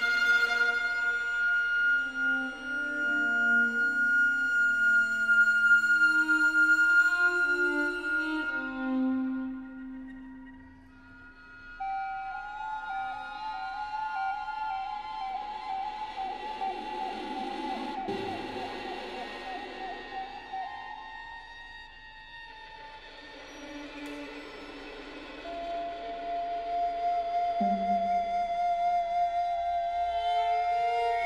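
Recorder and string quartet playing contemporary chamber music. The recorder holds a long high note over slow, sustained string chords, and the music thins almost to nothing around ten seconds in. A wavering held note then enters over soft strings, and a new steady high note comes in near the end.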